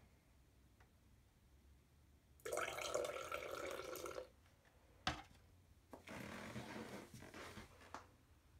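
Liquid poured from a cup into a glass partly filled with liquid Drano, splashing for about two seconds. A sharp clink follows, then a second, shorter pour.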